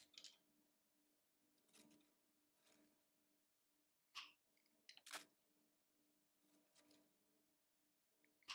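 Hand swage tool crimping a stainless steel swage terminal onto balustrade wire: faint, scattered metallic clicks and crunches as the jaws close and are repositioned, the loudest about five seconds in.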